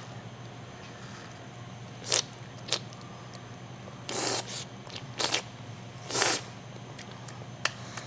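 Olive oil being sipped and slurped: several short slurps as air is sucked in through the teeth to aerate the oil across the mouth, the longest about four seconds in and another about six seconds in.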